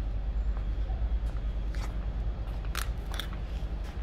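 Low, unsteady rumble of wind buffeting the phone's microphone, with a few light clicks of footsteps on paving.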